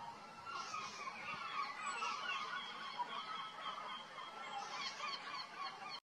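A flock of waterfowl calling, many short calls overlapping continuously, then cutting off suddenly at the end.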